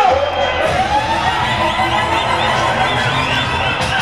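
Loud dancehall music with a crowd cheering and shouting over it. About half a second in, the bass drops out while a tone sweeps upward and holds.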